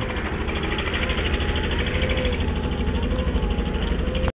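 Steady low rumble of a car rolling slowly over a snowy road, heard from inside the car as it is pushed with its engine dead after an electrical failure.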